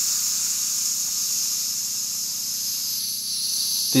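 Pressurised tetrafluoroethane vapour hissing steadily out of a partly opened valve on a small clear plastic pressure tube. The hiss is the pressure being released, which lets the liquid inside boil.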